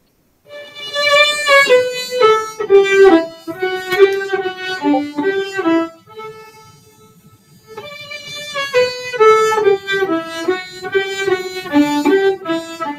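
Solo violin playing a melody. A phrase of mostly descending notes starts about half a second in, then comes a softer held note, and the phrase returns at about eight seconds.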